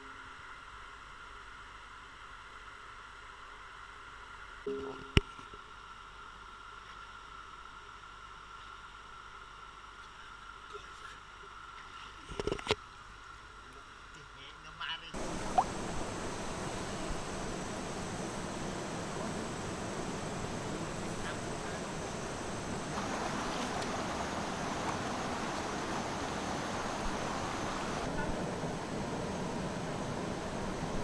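Muffled underwater sound from a camera held beneath the surface of a rocky river, with a few sharp knocks. About halfway through it gives way to the steady, louder rush of the river flowing over rocks.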